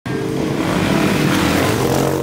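Motorbike engine revving loudly, its pitch wavering up and down, starting abruptly at the very beginning.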